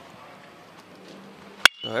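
A baseball bat hitting a pitched ball once, a single sharp crack with a brief ring, about one and a half seconds in, over faint crowd ambience. The hit sends a ground ball toward shortstop.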